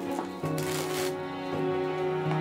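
Plastic cling wrap crinkling briefly about half a second in as it is pressed around a bowl, over steady background music.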